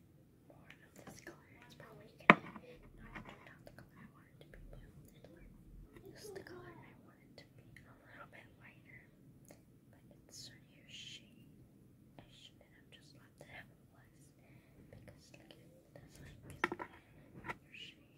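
Soft whispering, with small handling noises as makeup is swatched; a single sharp click about two seconds in is the loudest sound, and a few more clicks come near the end.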